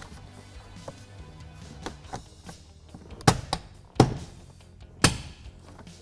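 Plastic interior trim clips on a kick panel snapping into place, heard as three sharp clicks in the second half, about a second apart, over quiet background music.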